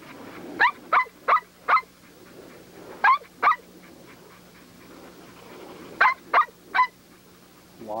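Pit bull barking in short sharp bursts: four quick barks about a second in, two more around three seconds, and three near six seconds.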